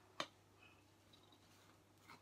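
Near silence, broken by a single short click a fraction of a second in.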